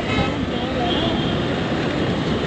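Steady wind and engine noise from a motorcycle on the move, heard on a rider's camera, with a faint voice briefly in the background.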